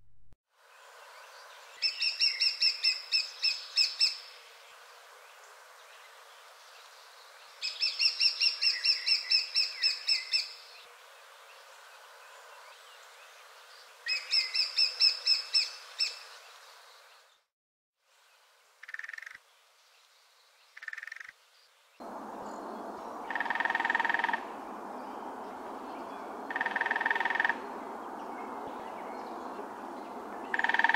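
Lesser spotted woodpecker calling: three bursts of quick, high, evenly repeated notes, then a few separate, lower single notes over a background hiss.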